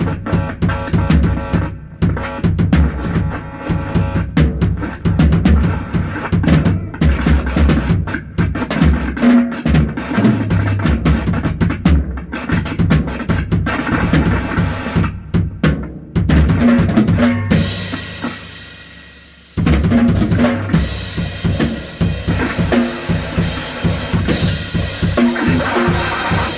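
Avant-jazz improvisation by a guitar, drums and woodwinds/keys trio, led by busy drum-kit playing with bass drum and snare. About two-thirds of the way through, the playing thins out and fades for about two seconds, then the full band comes back in suddenly.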